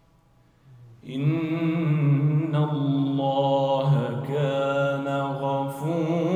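A man's solo Quran recitation in melodic tajweed chant over a microphone. After a near-silent first second, the voice comes in and holds long notes that bend slowly up and down in pitch.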